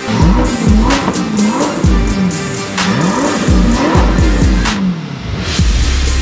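Corvette V8 being revved in repeated blips, its pitch rising and falling about four times, over background music with a steady beat.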